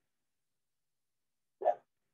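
Near silence, broken near the end by one short dog bark.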